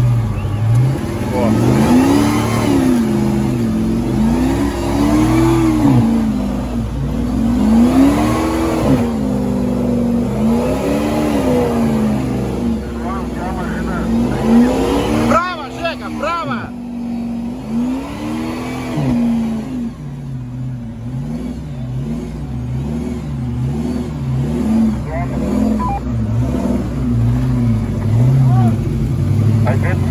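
Off-road SUV engine revved up and down again and again while the vehicle is stuck in deep mud, each rise and fall lasting about one and a half to two seconds. About halfway through the revving changes to quicker, shallower swings, about one a second.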